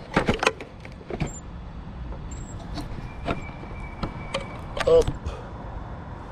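Scattered clicks and knocks from the loose, broken camera mount on a Traxxas E-Revo 2 RC truck rolling slowly over cobbles, with a faint steady whine through the middle.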